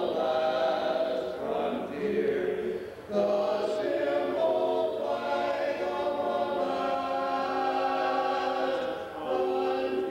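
Men singing a cappella in barbershop close harmony, holding sustained chords. There is a brief break for breath about three seconds in.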